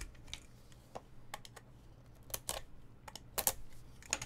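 A small cardboard trading-card box being handled and opened: light, irregular clicks and taps of card stock, about ten in four seconds.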